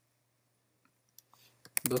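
A few faint, quick computer keyboard keystrokes about a second in, then a spoken word near the end.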